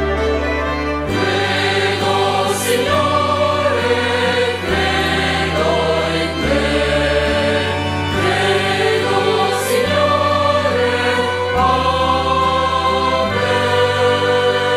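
A choir singing liturgical music with instrumental accompaniment; the voices come in about a second in, over held bass notes that change every couple of seconds.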